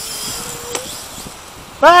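Hubsan X4 H502E quadcopter's motors whining high as it comes down onto its landing pad, the whine fading over the first second, with two light clicks over a steady hiss.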